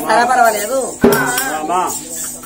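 A man's voice holding a wavering sung line in an oggu katha folk performance, with metallic clinking and jingling and one sharp strike about halfway through.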